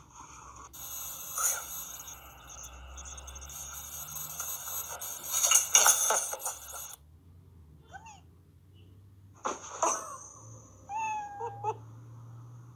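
A cat meowing: short calls that rise and fall in pitch, one about two-thirds of the way through and another near the end, with a sharp knock between them. Before that, a noisy stretch with two louder bursts that cuts off suddenly.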